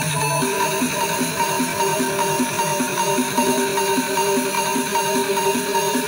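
Electronic background music with a steady beat; a held low note drops out about half a second in.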